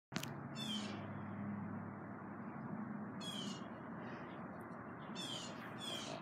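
Four short, high-pitched animal calls, each falling in pitch, over steady background noise with a low hum.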